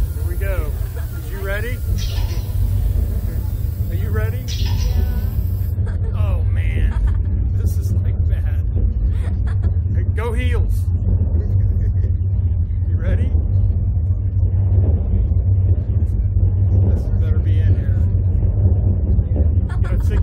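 Two slingshot ride riders screaming and laughing in bursts through the launch, over a steady loud low rumble.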